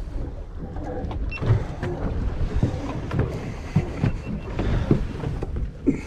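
Wind buffeting the microphone and water lapping at a boat's hull, with scattered knocks and bumps as a fish is carried across the deck and laid on a measuring board.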